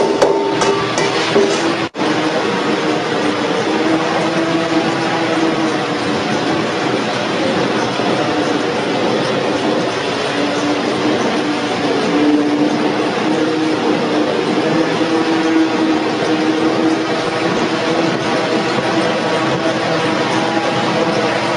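Industrial oil press machine running steadily: a dense mechanical noise with a low hum. A few clicks come near the start, and the sound drops out sharply for an instant about two seconds in.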